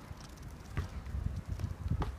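Wind buffeting the microphone in uneven low gusts, with a few faint ticks over outdoor background noise.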